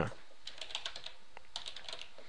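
Faint keystrokes on a computer keyboard, a quick irregular run of taps as a word is typed.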